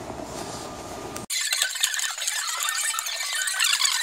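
Low indoor background hum, then, about a second in, a sudden switch to a dense, high, sticky crackling: a foam paint roller working wet paint over a plastic stencil.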